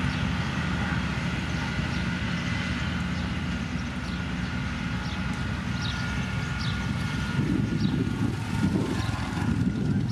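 Diesel engines of heavy road machinery running together (a Komatsu motor grader, a road roller and dump trucks), a continuous low rumble with a thin steady whine above it. The rumble grows louder and rougher in the last two or three seconds.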